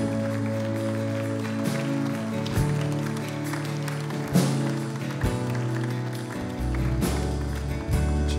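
A live worship band playing a slow closing song, with held chords. There are a few percussive hits, and a deep bass note comes in near the end.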